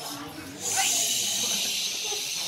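A long, steady "shhh" hushing the room, starting about half a second in and held to the end.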